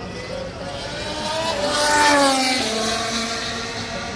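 A Formula 1 car's turbocharged V6 passes at racing speed. It grows loud to a peak about two seconds in, then drops in pitch and fades as it goes away.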